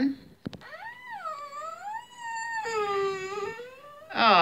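A young girl crying in one long, high, wavering wail that drops to a lower pitch a little past halfway. A short click comes just before it starts.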